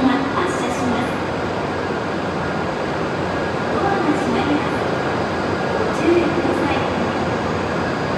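A shinkansen train standing at the platform with its doors open: a steady hum and rush of its running equipment mixed with station noise, with faint voices now and then.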